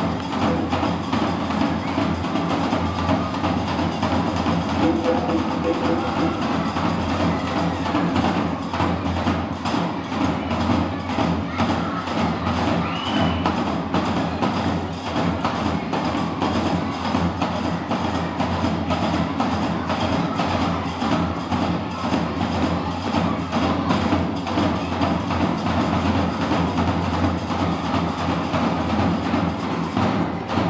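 Live Moroccan Gnawa music: large double-headed drums beaten with sticks under a dense, even clacking rhythm of qraqeb (iron castanets), played at a steady loud level.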